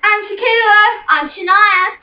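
Young female voices singing high, drawn-out notes that waver in pitch, with a brief break about halfway through.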